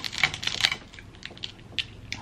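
Snow crab leg shells clicking and cracking as they are broken open by hand: a quick run of sharp clicks in the first second, then one more near the end.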